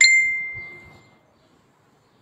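A single bright ding: a clear ringing tone struck once at the start that fades away over about a second.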